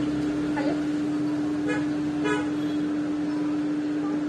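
A steady hum held at one pitch throughout, with faint voices in the background a few times.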